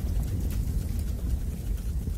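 A steady low rumble with a faint hiss above it, the sustained drone of the logo animation's intro soundtrack.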